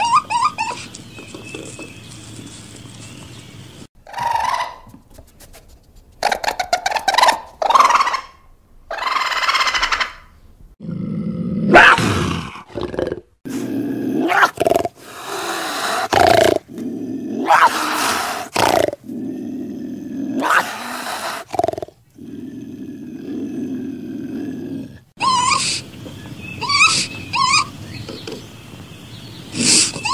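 Animal cries and harsh, rasping vocal sounds in short separate bursts, cut one after another with sudden breaks between them. High pitched cries that bend in pitch come at the start and again near the end.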